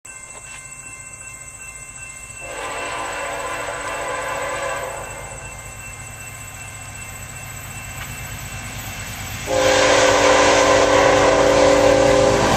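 Approaching BNSF freight locomotive sounding its air horn, several notes together: a blast of about two seconds a couple of seconds in, then a louder, longer blast starting near the end, over the low rumble of the oncoming train.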